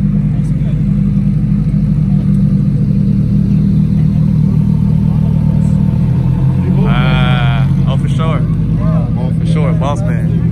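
Lamborghini Huracán EVO's V10 running at idle as the car creeps forward at walking pace, a steady low rumble. A voice calls out over it about seven seconds in, and people talk near the end.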